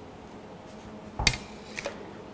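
A metal tray set down on a granite countertop: a sharp clatter about a second in, then a lighter knock, over faint room tone.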